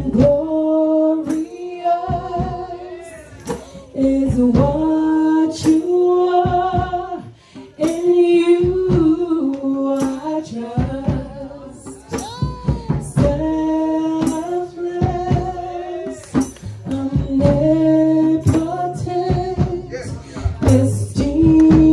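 A group of men and women singing a worship song together in long held notes, with sharp percussive hits that keep time throughout.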